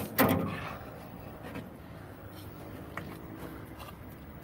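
A person climbing into a rusty metal ride car: a short loud noise right at the start, then faint shuffling and handling noise with a small click about three seconds in.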